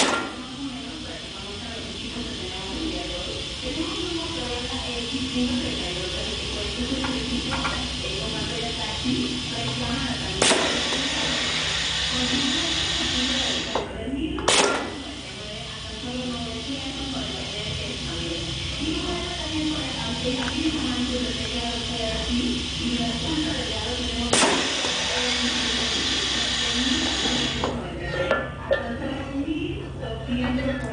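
Pneumatic piston filling machine running while it doses a very thick salsa into a jar. Compressed air hisses steadily, broken by three sharp clicks from the valve and cylinder: one at about ten seconds, one at about fourteen seconds just after a brief pause in the hiss, and one at about twenty-four seconds. The hiss stops near the end.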